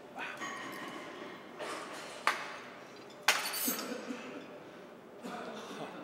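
Cable crossover machine at the end of a set: hard breathy exhales, and two sharp metallic clinks about a second apart a little before halfway, the second louder and ringing, as the cable handles or weight stack knock.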